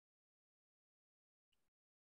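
Near silence: the sound is cut to almost nothing, with no audible sound.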